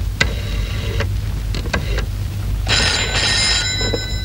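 A few sharp clicks, then a desk telephone's bell ringing for about a second in the second half: an incoming call.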